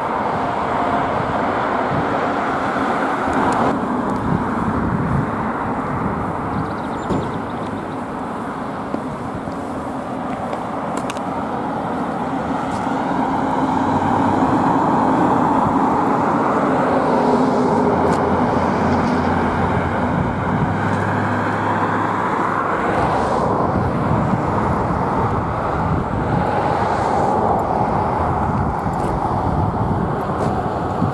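Outdoor road traffic noise, with a vehicle going by that swells through the middle and brings a low engine hum.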